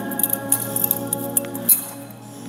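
Metal chains and body of a thurible (censer) clinking and jangling as it is swung during the incensing of the altar. The clinks are quick and irregular, with a sharp, loudest clink near the end. Behind them, sustained offertory hymn music fades away in the last moments.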